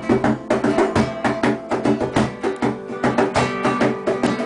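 Acoustic guitar strummed in a fast, steady rhythm, with a cajón struck by hand alongside it.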